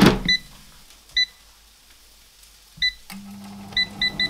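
Digital air fryer: its basket is pushed shut with a clunk, then its touch panel beeps four times as buttons are pressed, and its fan starts a steady low hum about three seconds in.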